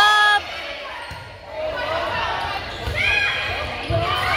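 Volleyball rally on a hardwood gym court: a loud shout at the very start, then a background of voices with dull thumps of the ball being played near the end.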